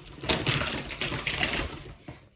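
Plastic shopping bag rustling and crinkling as groceries are rummaged out of it, with many short, sharp crackles.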